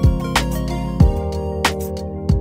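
Music with a steady beat of about one and a half beats a second over held chords.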